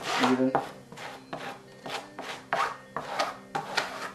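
Plastic spreader scraping over fiberglass cloth laid in spray adhesive on an EPP foam fuselage, smoothing it flat in short rasping strokes, about two a second.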